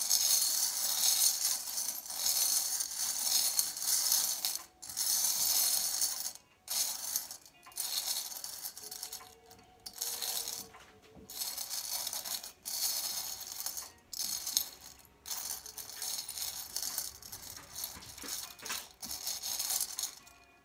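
A heap of small metal charms jingling and clinking as fingers stir them around a round tray, in stretches broken by several brief pauses.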